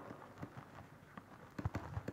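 Faint taps and scratches of a stylus writing on a pen tablet, with a small cluster of sharper clicks near the end.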